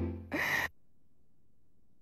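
Music fading out, then a person's short gasping breath about half a second in, followed by near silence.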